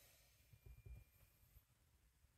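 Near silence: room tone, with a few faint low bumps about half a second to a second in.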